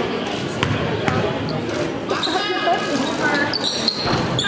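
A basketball bounced on a hardwood gym floor by a free-throw shooter, two sharp bounces about half a second and a second in, over steady gym crowd chatter.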